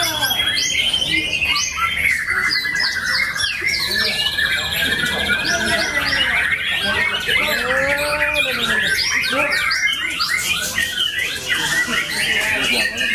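White-rumped shama (murai batu) singing a fast, varied song of whistles, glides and trills, with a long trill in the middle. Other caged songbirds sing over it.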